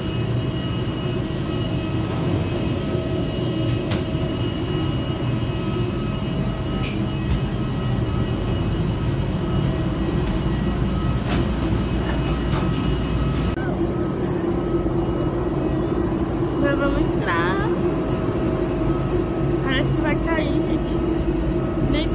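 Steady, loud airliner cabin noise: the low rumble of the jet engines and air system, with a few steady tones over it. The sound changes abruptly about 13 to 14 seconds in, where one recording gives way to another.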